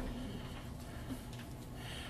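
Quiet room tone with a steady low electrical hum; no distinct sound event.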